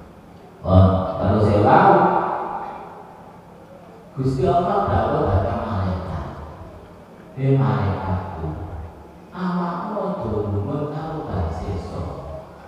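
A man's voice through a microphone, in phrases a few seconds long with short pauses between.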